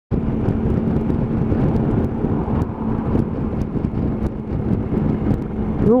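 Motorcycle riding at road speed: a steady engine note under a constant rush of wind on the helmet-mounted microphone.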